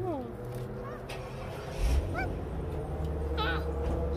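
A toddler's and a woman's voices, with a steady low rumble underneath that gets stronger after a thump about two seconds in.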